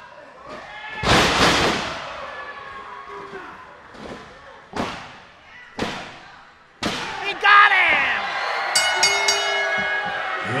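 A wrestler is slammed onto the ring canvas with a loud crash about a second in. Then come three sharp slaps on the mat about a second apart, the referee's pin count. Crowd noise rises after the third slap, and a rapid ringing tone sounds near the end.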